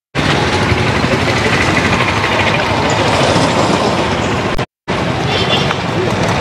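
Loud outdoor street noise of a group of people talking as they walk along a road, mixed with passing motorcycle traffic. The sound cuts out to silence for a moment at the start and again about four and a half seconds in.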